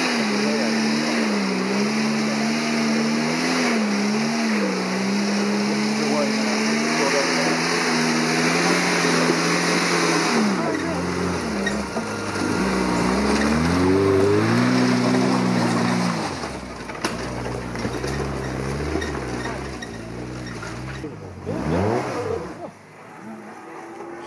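A trials car's engine revving hard as it climbs a steep, rocky hill, its pitch wavering up and down over a steady rushing noise. After about 16 seconds it eases off and turns quieter and more uneven.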